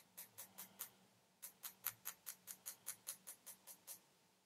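Faint, light taps of a small hammer on a fine metal punch held upright on a copper sheet, driving in a wire dot for raised dot inlay. Four quick taps, a short pause about a second in, then a steady run of about a dozen at roughly five a second.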